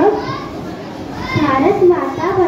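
A young girl speaking into a hand-held microphone.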